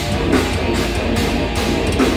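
Heavy metal band playing loud and live, with distorted electric guitars and a drum kit filling a concert hall.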